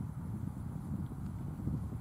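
Wind buffeting the camera's microphone: a low, uneven rumble that flutters continuously.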